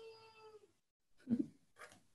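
A cat meowing: one long, drawn-out meow, rising slightly in pitch, that ends less than a second in. It is followed by a soft bump and a few small clicks.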